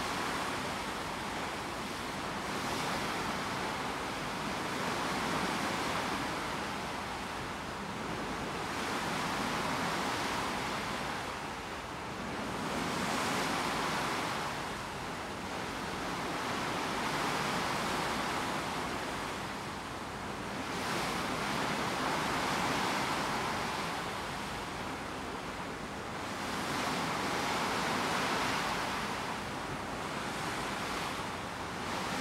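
Sea water rushing and splashing along the hull of a moving ship, a steady wash that swells and eases every few seconds, with some wind.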